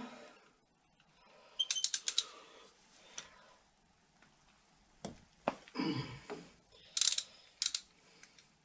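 Ratchet wrench clicking in short runs while loosening the bolts on a tractor's PTO shaft cover, one run about two seconds in and another near the end, with a few soft tool and handling knocks between.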